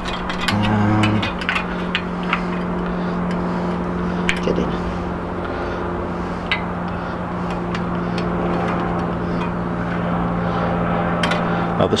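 Occasional small sharp clicks of bicycle spokes being turned while truing a wheel, over a steady low engine-like drone that runs throughout.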